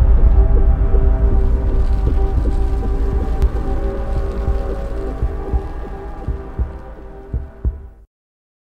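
Cinematic intro sound effect: the long decaying tail of a deep impact. A heavy low rumble with held droning tones and scattered low thumps fades steadily and cuts off at the end.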